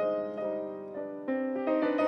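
Grand piano playing a gentle passage, a new note or chord about every half second, each ringing on and fading.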